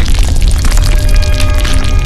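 News channel logo sting: loud music with a deep bass boom under dense crackling hits, with held tones coming in about halfway through.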